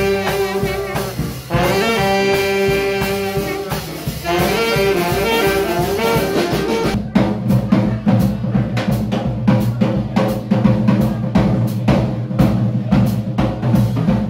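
A small live jazz band. Saxophones and brass hold long chords over the drum kit for about seven seconds, then the horns drop out and the drum kit plays a busy break with the double bass under it.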